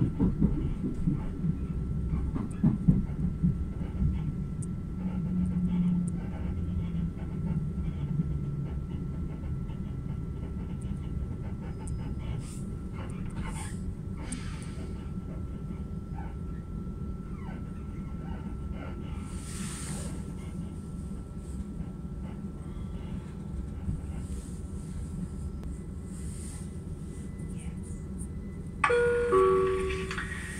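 Cabin sound of a Southeastern electric train running: a steady low rumble, with a falling motor whine in the first several seconds as it slows for a station. Near the end the on-board PA gives a two-note descending chime.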